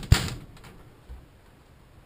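A hand striking a ribbed metal roll-up door: one sharp bang right at the start that rings out briefly, then a faint low thump about a second in.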